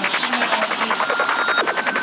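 Dark psytrance track (156 bpm) in its outro: a rapid, hissy pulsing synth texture with short gliding squelches and a held high tone, and no kick drum or bass.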